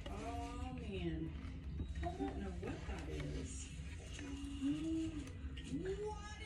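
Indistinct voices speaking in short bursts over a low steady hum, with no clear words.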